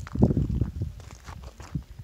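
Gusts of wind buffeting the microphone in irregular low rumbling blasts, strongest in the first half second and easing off after.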